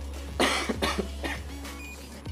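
A person coughing: three short coughs about half a second apart, the first the loudest.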